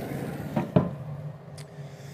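A sharp knock, as of something hard being set down, about three-quarters of a second in, following a lighter click. A steady low hum runs underneath.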